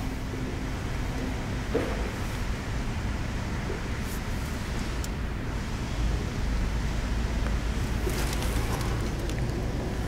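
Steady low hum with a soft air hiss inside the cabin of a 2016 Toyota Land Cruiser, its engine idling and climate fan running. A small knock about two seconds in and a light rustle near the end.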